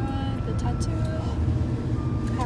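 Steady low rumble of road and engine noise inside a moving car's cabin, with a faint steady high tone above it.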